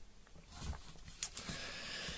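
Faint handling noise of a zucchini being turned over by hand on a cardboard sheet: a few soft knocks and rubs near the middle.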